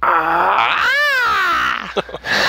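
A man's long wordless vocal cry, imitating an eagle call. It rises in pitch to a peak about a second in, then falls away.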